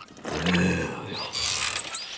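Cartoon sound effect of a shopping trolley rattling along on its wheels and rolling through a puddle of spilled liquid, ending in a brief hissy splash.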